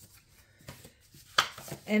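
Printed paper cards handled lightly over a wooden desk, with one sharp tap about a second and a half in.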